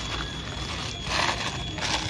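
Clear plastic bag rustling and crinkling as a fan motor housing is handled inside it, loudest in a burst about a second in.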